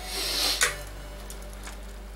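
A short scratchy rustle of computer cables being handled and pulled against the case, lasting about half a second near the start, then only a low steady hum.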